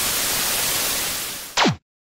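Television static sound effect: an even hiss that eases off slightly. Near the end a short, loud falling sweep, like an old TV set switching off, is followed by a sudden cut-off.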